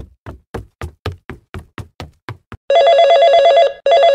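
A quick run of about ten short taps, roughly four a second, then a cell phone starts ringing with a loud electronic trill about two and a half seconds in. The ring breaks off for a moment near the end and starts again.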